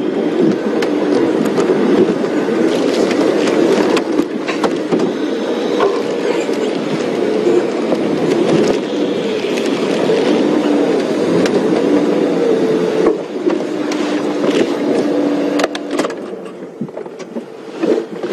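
Open safari vehicle's engine running as it drives slowly off-road over rough ground, with knocks and rattles from the bodywork. It quietens near the end as the vehicle pulls up to park.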